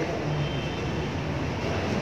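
Steady room noise of a hall, an even hiss and low hum with no distinct events.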